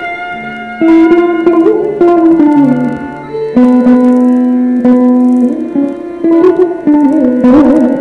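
Carnatic instrumental music: a violin and a mandolin playing a melody together, the notes sliding and bending between pitches, with sharp plucked note starts.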